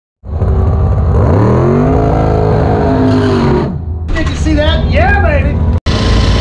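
A race car engine running hard, its pitch climbing over the first couple of seconds and then holding before it cuts off. A loud voice with rising and falling pitch follows for the last two seconds.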